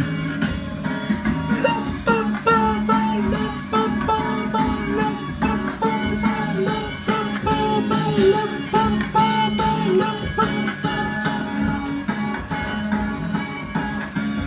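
Kiddie ride train's speaker playing the instrumental break of its sing-along song: a plucked-string melody of short notes over a steady backing.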